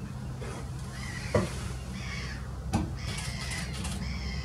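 Birds calling over a steady low hum: two short, loud calls that drop sharply in pitch, about a second and a half apart, with fainter higher calls between and after them.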